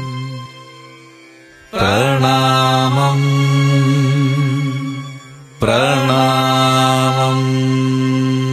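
Malayalam devotional song: a steady low drone with long, wavering sung notes that come in sharply about two seconds in and again near six seconds, each after a brief quieter moment.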